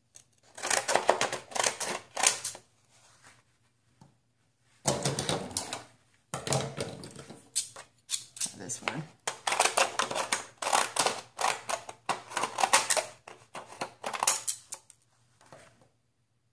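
Decorative-edge craft scissors snipping through paper in quick runs of short cuts, with a pause of about two seconds a few seconds in.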